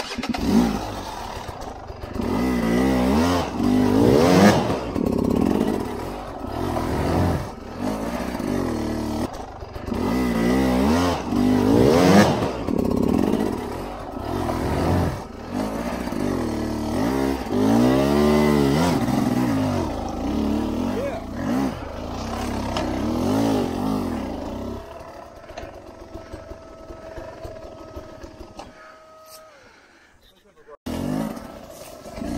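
Sherco 250 enduro dirt bike engine being ridden hard on a tight trail, revving up and falling back again and again as the throttle is worked, with knocks from the bike over roots and ruts. It runs lower and steadier for the last few seconds before cutting off.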